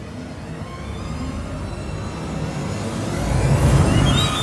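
Excerpt of an electronic horror film score: synthesized string glissando effects swelling steadily louder, heavy in the low end, to a peak near the end.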